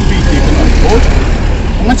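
A man's voice in short fragments between spoken points, over a steady low rumble like a nearby vehicle engine idling.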